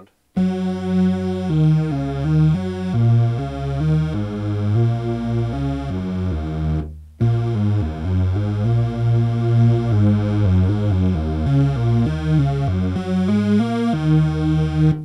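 Yamaha TG77 FM tone generator playing a supersaw-like patch made of six detuned sawtooth voices and two sub-oscillators, its two elements detuned +3 and −3. It plays a run of notes that change several times a second, with a short break about seven seconds in.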